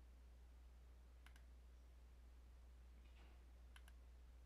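Near silence over a low steady hum, with two faint mouse clicks, one about a second in and one near the end, each a quick press-and-release.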